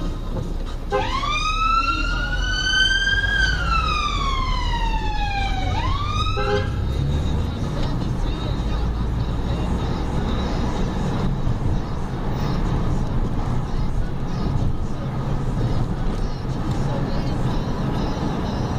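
Siren of a blood service emergency response car on a blue-light run, heard from inside the cabin: one wail that rises quickly, climbs slowly, falls for a couple of seconds, starts to rise again and is cut off about six and a half seconds in. After that, steady engine and road noise from the moving car.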